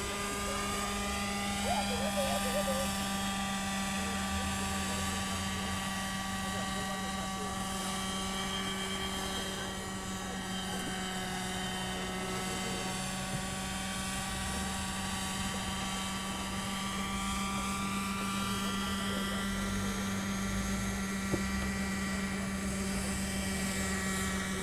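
Radio-controlled model helicopter's glow-fuel engine and rotors running steadily in flight, a constant high engine tone that dips slightly in pitch midway and rises again as the helicopter manoeuvres.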